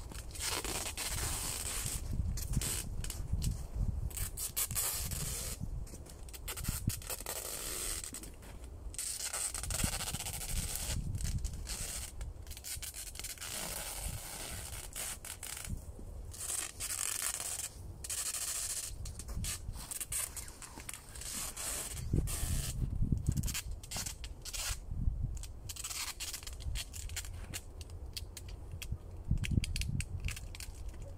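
Adhesive tape being pulled off its roll and wrapped around the wooden poles of a conical shelter frame, in repeated rasping stretches of varying length.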